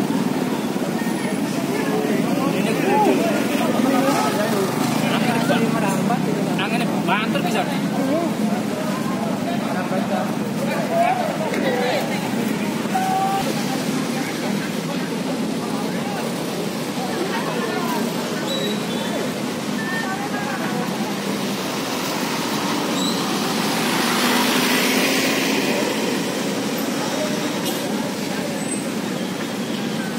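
Many bystanders' voices talking and calling out over one another, with street traffic noise underneath. A rushing noise swells about 22 seconds in and fades a few seconds later.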